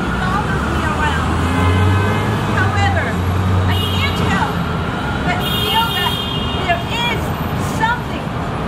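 City street traffic under a woman's voice reading aloud. A passing vehicle's low engine rumble rises about a second and a half in and fades after about four seconds.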